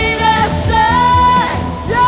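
Live rock band playing, a girl singing lead over drums and guitar, holding one sung note for about half a second about a second in.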